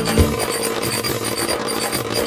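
Instrumental passage of a 1994 Turkish pop song with no vocals: one low beat just after the start, then lighter sustained tones with little bass.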